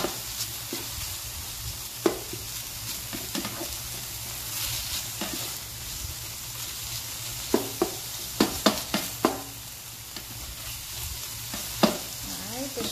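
Ground beef sizzling in a hot, oiled skillet as a slotted spoon stirs and scrapes through it. Sharp clacks of the spoon against the pan come now and then, with a quick cluster of them about eight to nine seconds in.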